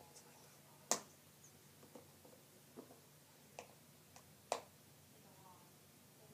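Scattered light clicks and taps of small objects being set down on a table, with the loudest about a second in. A faint voice is heard near the end.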